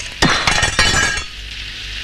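Glass breaking: a quick clatter of sharp, clinking impacts for about a second, then dying away.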